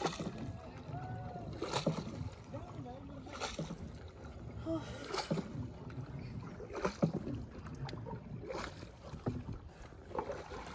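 Wooden rowboat being paddled: five regular paddle strokes, about one every second and a half to two seconds, over a low steady water-and-wind noise.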